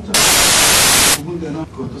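A loud burst of white-noise static lasting about a second, cutting off abruptly, with short chopped fragments of a man's voice around it: a digital glitch breaking up the recording.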